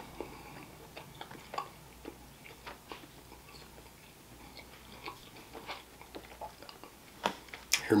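A person chewing a mouthful of pasta with meat sauce, close to the microphone: soft, wet mouth clicks scattered irregularly. A voice starts right at the end.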